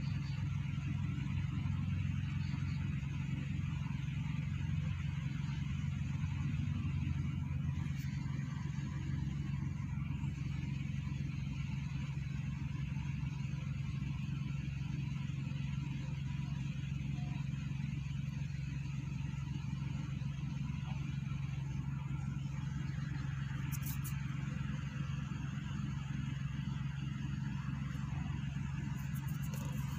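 Steady low drone of distant motor traffic, unbroken, with a couple of faint ticks.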